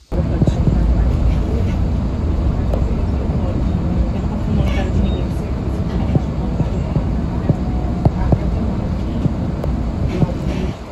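City bus running, heard from inside the cabin: a steady low rumble of engine and road noise with scattered rattles and knocks.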